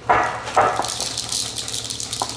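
A spatula stirring and scraping stiff cookie dough around a ceramic mixing bowl, giving a run of quick scratchy rattles and knocks.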